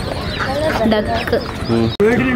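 People talking in the background, with short calls from caged ducks and chicks mixed in.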